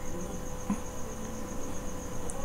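A steady, high-pitched trill that pulses evenly, insect-like, over a faint low hum in the background.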